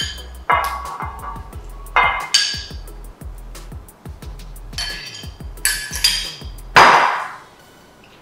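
Cooked cow foot pieces scraped from a glass bowl into an enamelled pot with a silicone spatula: repeated ringing clinks of the glass bowl against the pot and spatula, with a louder clatter about seven seconds in. Background music with a steady bass line plays underneath and stops after that clatter.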